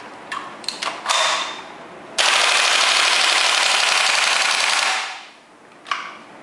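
WE G39C gas-blowback airsoft rifle firing a long full-auto burst of about three seconds, with rapid, continuous shots that then tail off. A few sharp clicks from the gun come about a second before the burst.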